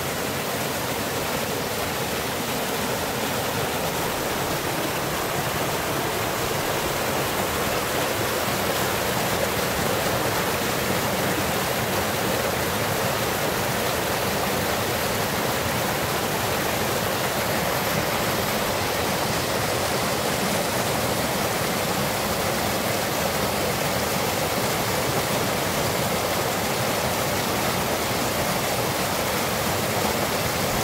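Mountain stream rushing over boulders in small cascades, a steady, unbroken rush of water.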